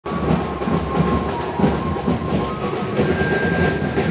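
Dhol-tasha drum ensemble playing a dense, driving rhythm, with a thin steady high tone above it that steps up in pitch twice.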